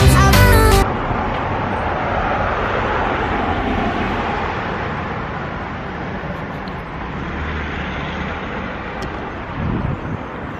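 Music stops abruptly under a second in, giving way to a steady hum of road traffic that slowly fades.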